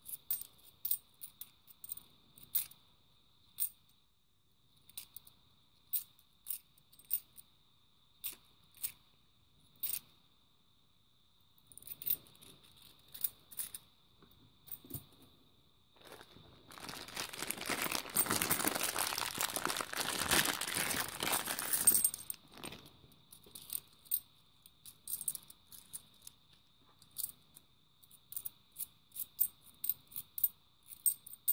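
Fifty-pence coins clicking and clinking against one another in sharp, irregular clicks as a small stack is handled and sorted by hand. About seventeen seconds in, a louder stretch of dense noise lasts about five seconds.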